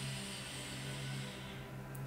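A long, soft breath drawn in through the nose as a breathing-exercise demonstration, a faint steady hiss that fades out about one and a half seconds in.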